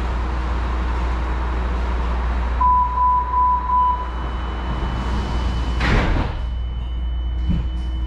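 MARTA subway car's door chime, three short beeps, followed about two seconds later by the sliding doors closing with a short loud rush and a low thump, over the standing car's steady low hum.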